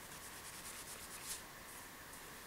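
Faint, irregular rubbing of an alcohol-dampened cotton wool pad wiped over a steel knife blade, cleaning grime off it.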